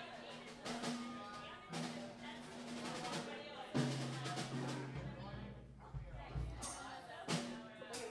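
Electric guitars, bass guitar and drum kit playing loosely on a live stage: a few held low bass notes and scattered drum hits with no steady beat. Voices chatter over it.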